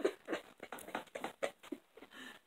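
A man's soft, breathy laughter: quiet chuckling puffs of breath in short, uneven bursts several times a second.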